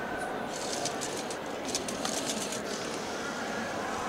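FTC robot's intake wheels and track conveyor running, drawing a glyph cube in and carrying it up through the robot, with a run of light clicks and rattles over steady background noise.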